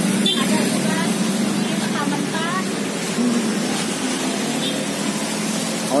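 Steady street traffic noise, motorbikes and cars running past, with a constant low engine hum and faint voices in snatches.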